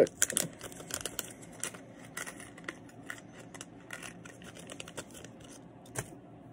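Fingers handling a fly-tying hook at the vise: a run of small clicks and rustles, loudest in the first second.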